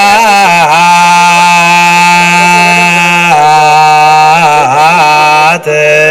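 A voice chanting slowly in long held notes, with quick ornamented turns between them. About three seconds in it drops to a lower held note.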